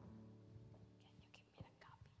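Near silence as the last held notes of the music die away, then faint whispering and a soft click about a second and a half in.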